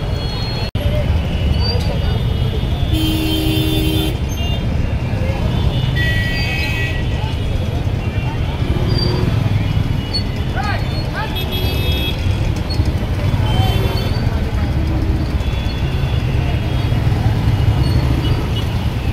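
Gridlocked street traffic of auto-rickshaws and cars, engines running in a low steady rumble, with vehicle horns honking several times and a crowd of voices talking.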